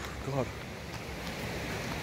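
Steady rush of running water from a stream.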